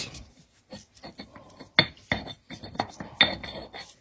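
Granite pestle grinding and scraping garlic around the inside of a black granite mortar, with irregular clinks and knocks of stone on stone; the sharpest strikes come about two seconds in and again past three seconds. The garlic is being worked up the sides to season the new mortar.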